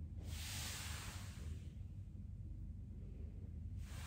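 A woman breathing out audibly during a Pilates seated spine stretch, curving forward: one long breath of about a second and a half near the start and another beginning near the end, over a steady low hum.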